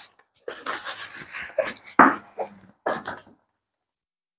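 A fabric backpack being handled, its fabric rustling and its zippers rasping in a run of short scrapes as its pockets are worked open.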